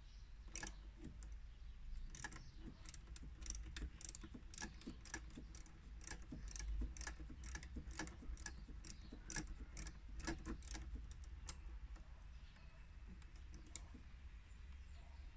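Irregular light clicks and taps of engine-bay parts being handled by hand, roughly one or two a second, thinning out near the end, over a faint low rumble.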